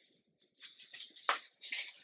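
Thick braille paper rustling and sliding against a stack of paper sheets as it is moved into place by hand, in a few short scrapes with a sharp tick in the middle.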